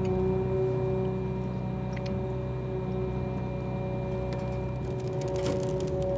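Oyster boat's engine and crane hydraulics running: a steady low hum with a held whine over it, while a wire cage is hoisted on a chain.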